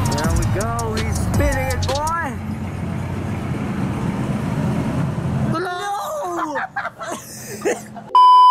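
Several voices exclaiming and laughing over a steady low background hum for about the first two seconds. The hum falls away after about five seconds, leaving a few softer vocal sounds near the end.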